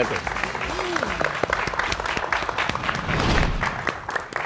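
Studio audience applauding: a steady patter of many hands clapping, with a few voices heard faintly over it early on.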